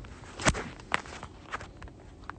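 Phone handling noise: a few soft knocks and rustles as the phone is moved and brushes against clothing, the strongest about half a second in and just before one second.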